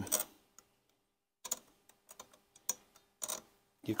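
Faint, irregular ticks and small scrapes of a thin metal pick working latex paint out of the slots of brass hinge screws. They start about one and a half seconds in and come at uneven spacing.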